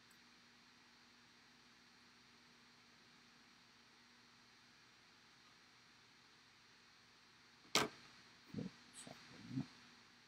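Near silence: a faint steady hiss of room tone, broken near the end by a single sharp click.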